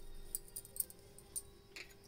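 A few faint, light clicks of a spoon against a glass mixing bowl as turmeric powder is tipped in, over a faint steady hum.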